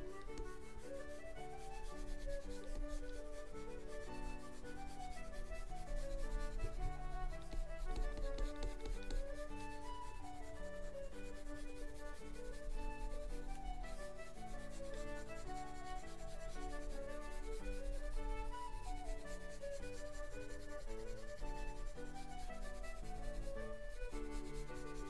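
Stylus scratching across a drawing tablet in continual short strokes, over soft background music: a concertina tune with rising and falling note runs.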